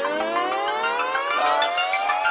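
A siren wail rising slowly in pitch, the sweep starting again about one and a half seconds in, laid over a hip-hop backing track.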